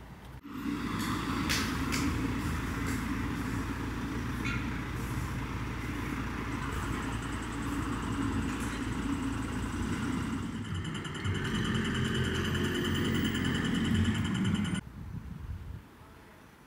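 City street traffic: cars running and passing at an intersection, a steady rumble of engines and tyres. A high-pitched steady tone joins in the second half, and the sound cuts off suddenly about a second before the end.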